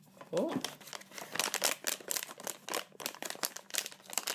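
Foil blind bag crinkling in the hands in quick, irregular crackles as fingers work at opening it; the bag is sealed tightly.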